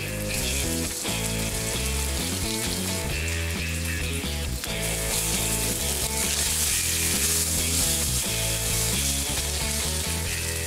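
Steak frying in a pan, a steady sizzle, with background music playing over it.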